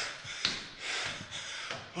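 A man breathing hard and panting, out of breath from climbing seven floors of stairs.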